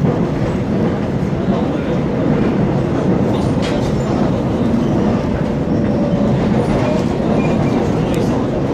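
Seoul Metropolitan Subway Line 1 electric commuter train running at speed, heard from inside the passenger car: a steady, loud rumble of wheels on the track.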